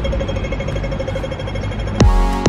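Pedestrian crossing audible signal ticking fast and evenly while the green walking man is lit, telling pedestrians it is safe to cross, over low street rumble.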